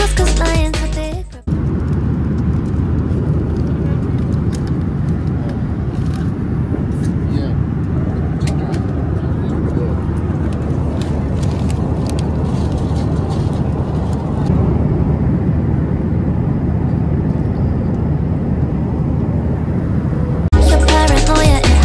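Background music cuts off about a second and a half in. After it comes the steady low roar of an airliner cabin in flight, with a few faint clicks and knocks near the middle.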